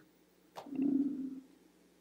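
A soft mouth click, then a short, low, closed-mouth hum of a man's voice, like a brief "mm", lasting under a second.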